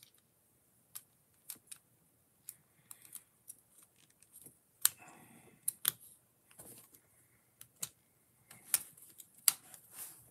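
Plastic construction-kit parts clicking and snapping together as pieces are fitted and joined by hand: a scattered series of sharp clicks, the loudest about halfway and near the end.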